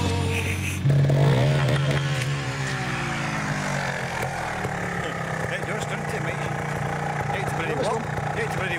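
Trials motorcycle engine running close to the microphone, its revs falling over a few seconds after coming in about a second in, then settling to a steady idle.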